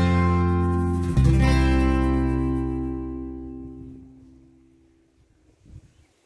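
Background acoustic guitar music: a strummed chord at the start and another about a second in, each ringing on and fading away to near silence by about five seconds in.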